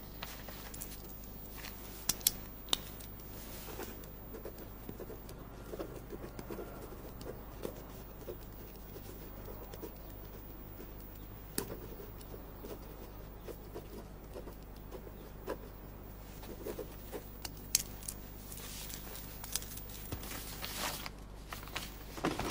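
Faint pen-and-paper sounds at a desk as a form is filled in: light scratching and rustling with a few scattered sharp clicks, over a low steady hum.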